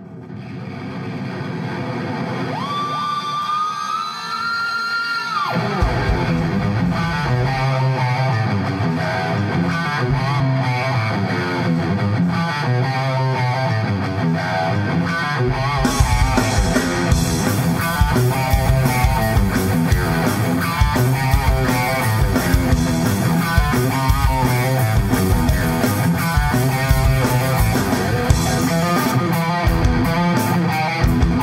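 Live rock band with distorted electric guitar, bass and drums, fading in. It opens on a held note sliding up in pitch, then a bass and guitar riff starts about six seconds in, and the full drum kit with cymbals joins about halfway through.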